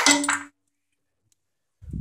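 The end of a spoken word, then dead silence for over a second, broken near the end by a low thump as speech resumes.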